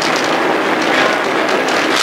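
Steady cabin noise of a moving car, recorded on an old audio tape that has been heavily noise-reduced, which leaves it a crackly hiss.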